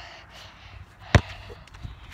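A basketball bounced once, a single sharp thump a little over a second in, with a much fainter knock shortly after.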